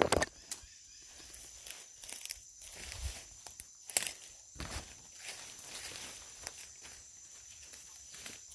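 Footsteps and the rustle of leaves and branches as someone walks through dense forest undergrowth, irregular, with louder brushing and cracking right at the start and about four seconds in.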